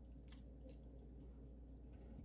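Faint, soft squishes and a few light clicks of a spoon stirring thick vegetable soup in a large pot.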